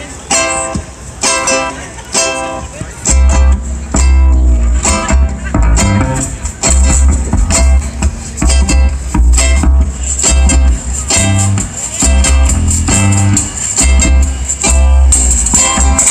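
Guitar strumming a reggae rhythm in short, evenly spaced strokes, with a deep bass line joining about three seconds in.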